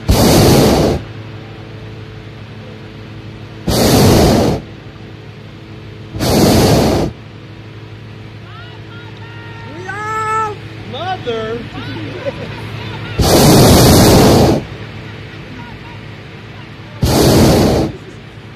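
Hot air balloon's propane burner firing in five loud blasts of about a second each, the fourth the longest, heating the air in the envelope.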